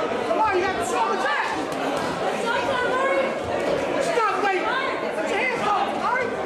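Indistinct chatter of many overlapping voices from spectators around a boxing ring, steady throughout, with no single voice clear.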